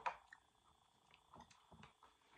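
Near silence with a few faint, short, soft wet sounds from someone drinking from a plastic soda bottle, after a small click at the start.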